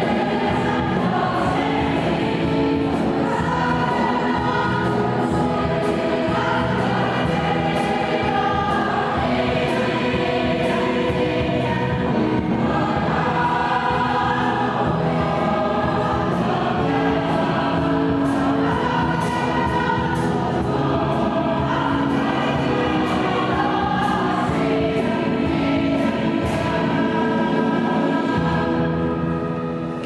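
Mixed choir of men and women singing, accompanied by an electronic keyboard and a drum kit keeping a steady beat with regular cymbal strokes; the music fades out near the end.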